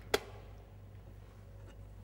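A single short, sharp knock just after the start, as kitchen things are handled, then quiet room tone with a low steady hum.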